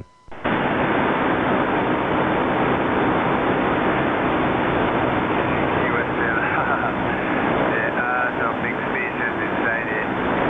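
Radio transceiver receiving, with steady static hiss from the speaker after the operator unkeys. From about six seconds in, a weak distant station's voice starts coming through faintly in the noise.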